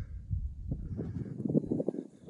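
Wind buffeting the microphone: a low, uneven rumble with short irregular thumps.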